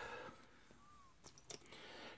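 Near silence, with a couple of faint clicks of plastic Lego pieces being handled about a second and a half in.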